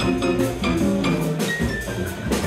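Live jazz combo of electric keyboard, upright bass, drum kit and electric guitar playing an instrumental passage, with a walking bass line and steady cymbal and drum strokes under the chords.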